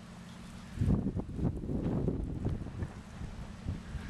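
Wind buffeting the microphone in irregular low rumbling gusts, starting about a second in.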